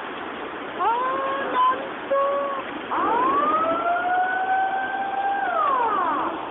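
Tsunami floodwater rushing through a street, a steady noise of churning water. Over it, a high wailing tone comes in a few short rising pieces about a second in, then one long wail that climbs slowly and drops away near the end.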